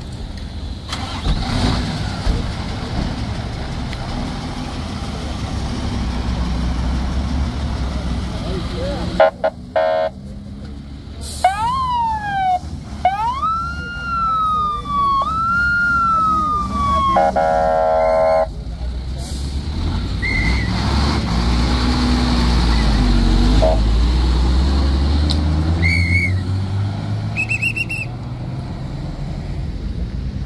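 Vehicle engines running by the road, with an emergency vehicle's siren sounding briefly about halfway through: a few falling and rising wails, then a fast pulsing burst.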